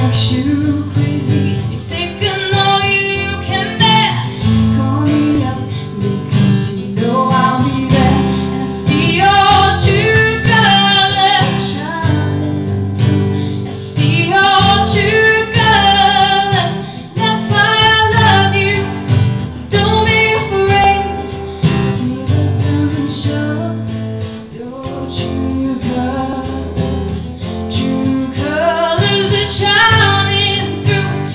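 A woman singing a song live into a microphone while strumming an acoustic guitar, her voice coming in phrases of a few seconds with short breaks, over steady guitar chords.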